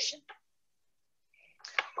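A woman's reading voice ends a sentence, followed by about a second of dead silence. A short breath with a click comes just before she speaks again.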